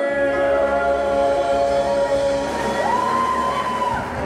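Live group vocals: several voices sustain a long chord in a club room. About three seconds in, the top voice leaps up to a much higher note, holds it briefly, and then the singing cuts off.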